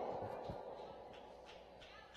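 A pause in amplified speech: the reverberation of a man's voice through a PA dies away in a large room, leaving faint room tone with a few soft, short sounds.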